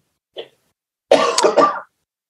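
A person clearing their throat with a short cough, lasting under a second, about a second in; a faint brief sound comes just before it.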